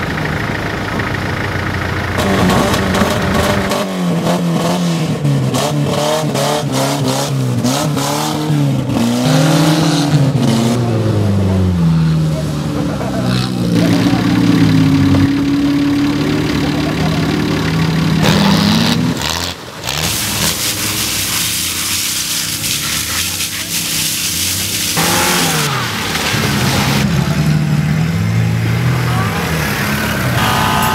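Off-road 4WD engines revving up and down over and over as the vehicles work through deep mud, each rev a rise and fall in pitch lasting a second or two. The revving is busiest in the first two-thirds, then the engine runs more steadily with a few more revs near the end.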